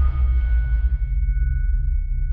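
Sound-design sting for a studio logo: a deep, steady low drone under two thin high ringing tones that hold and slowly fade.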